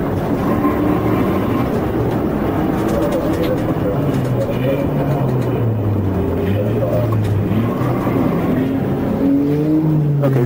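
Police cruiser's engine and tyre noise heard from inside the car at highway speed, the engine note drifting up and down with speed and rising near the end.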